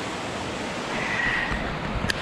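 Surf breaking and washing up a sand beach, a steady rush of waves, with wind buffeting the microphone.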